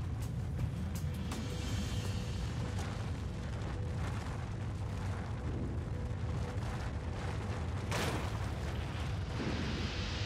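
Dramatized earthquake sound effect: a steady deep rumble under a dramatic music score with a faint held note, with a sharper crash-like hit about eight seconds in.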